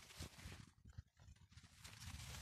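Near silence with faint, irregular soft thumps and rustling from someone walking through a field of young crop plants, the leaves brushing past.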